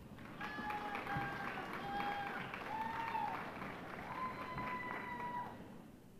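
Audience applause, with a series of long held high notes or calls over the clapping, dying away near the end.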